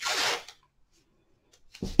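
Masking tape pulled off the roll: one short rasping rip lasting about half a second.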